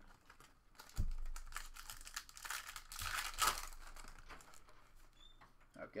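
A foil trading-card pack being torn open, its wrapper crinkling and crackling for a few seconds, loudest near the middle. There is a low knock about a second in.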